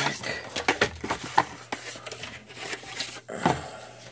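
Packaging being handled and pulled open to get a coin set out: an irregular run of crinkles and sharp little clicks.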